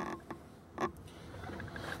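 Faint knocks and creaks of someone moving through a camper van's interior: a short knock at the start and another just under a second later, over low background noise.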